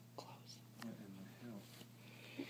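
Faint, quiet speech, partly whispered, with a few soft clicks, over a steady low hum.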